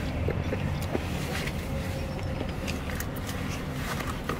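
Car engine idling, a steady low rumble heard from inside the cabin, with a few faint taps and clicks over it.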